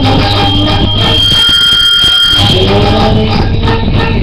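Karaoke: a loud backing track with a voice singing into a microphone. About a second in, the bass and singing drop away for about a second and a half while a steady high tone sounds, then the music and singing resume.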